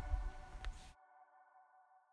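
A single click of the reset button on the fan's inline breaker box, over low rumbling wind or handling noise, resetting a tripped breaker. The sound cuts off abruptly a little under a second in, leaving only a very faint steady tone.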